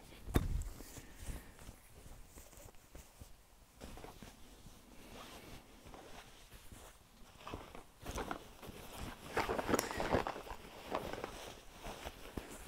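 Handling noise of cross-stitch fabric and a fabric project bag: a soft knock at the start, faint rustling, then a louder stretch of rustling and crinkling about eight seconds in.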